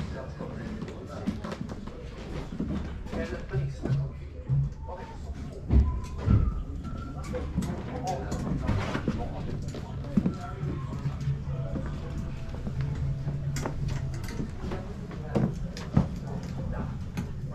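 Indistinct voices and ambient music, with scattered light knocks and clicks and a couple of louder thumps about six seconds in.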